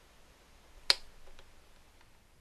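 A single sharp click about a second in as the power button of a Videonics MX-1 digital video mixer is pressed to switch the unit off, followed by two faint ticks.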